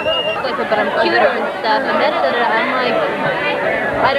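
Crowd of many people talking and shouting over one another at once.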